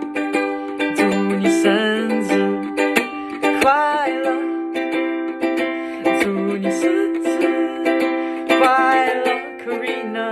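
A ukulele strummed in chords, with a man singing over it in long, wavering notes.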